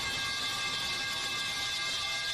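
Steady hissing drone with several held high tones and no beat, from a sustained stretch of the clip's soundtrack.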